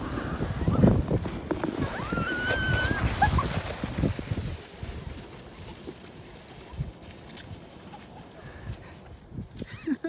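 Sleds scraping and hissing over packed snow as they push off, with a child's high squeal of delight about two seconds in; the noise dies down to a soft steady hiss after about four and a half seconds.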